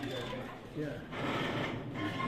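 Indistinct chatter of several people talking at once in a room, no single voice clear, with some rustling and handling noise in the second half.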